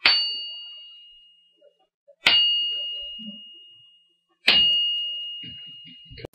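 A test part struck three times, about two seconds apart, for resonant acoustic inspection. Each strike rings with a clear high tone and a fainter higher one, dying away over a couple of seconds. The system triggers on each strike and records the part's resonant frequencies to grade it pass or fail.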